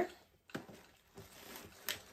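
Plastic baby-wash and shampoo bottles being handled and set upright in a plastic basket: two short clicks, about half a second in and near the end, with faint rustling in between.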